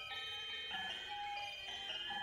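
Free-improvised music from a quartet of voice, violin, percussion and keyboards, in a quiet passage. Several sustained high notes overlap and change pitch every half second or so, with no steady beat.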